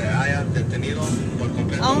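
Steady low rumble from a spinning amusement-park teacup ride, with voices; someone exclaims "Oh" near the end.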